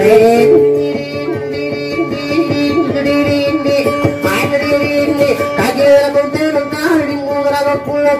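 Dayunday music: an acoustic guitar picking a repeating melody while a voice sings over it with sliding, ornamented lines.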